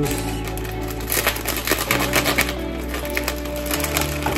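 Background music with steady bass notes, over the crinkling and crackling of a plastic bag of brown sugar being opened by hand.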